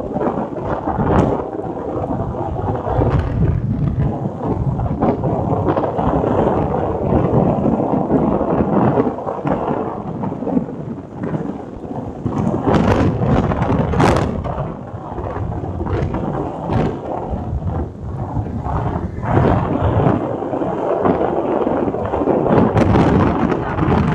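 Wind buffeting the microphone of a camera on a moving vehicle: a loud, continuous rumbling roar with irregular gusty surges.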